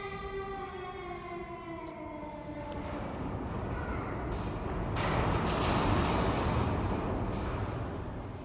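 A drawn-out, slowly falling 'aaah' cry from a child's voice, as if being sucked into a black hole. It gives way to a rushing whoosh that swells about five seconds in and fades near the end.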